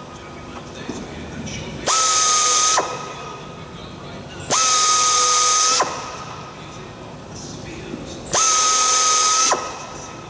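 A hand-held pneumatic air drill runs in three short bursts of about a second each, a steady whine over air hiss, starting and stopping sharply. It is driving a splined bit to unscrew corroded aluminium plug rivets from an aircraft wing panel.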